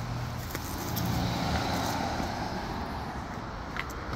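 Road traffic noise on a city street: motor vehicles running, rising slightly around a second in and then steady.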